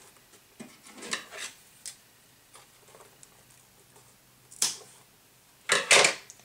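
Hands handling jute twine and scissors: soft rustles and small clicks, then two sharp snips near the end as the scissors cut the twine.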